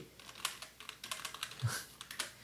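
Computer keyboard being typed on: a run of light key clicks at an uneven pace as a short word is typed.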